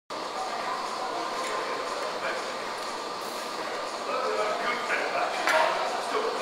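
Gym background: a steady murmur of distant voices, with a sharp metallic clink about five and a half seconds in.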